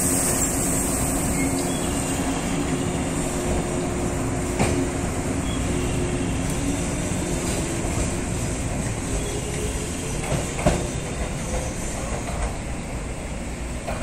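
A 115 series electric train pulling out of the station: steady running rumble with a faint hum, and single clacks over rail joints about five and ten seconds in. It gets slowly quieter toward the end.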